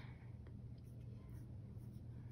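Faint scratching of a pencil sketching on sketchbook paper, in a few soft strokes over a low steady hum.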